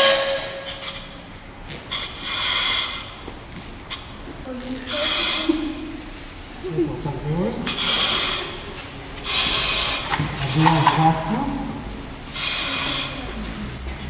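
Firefighter breathing through a self-contained breathing apparatus face mask: the regulator's demand valve hisses with each breath, about six breaths spaced roughly two and a half seconds apart.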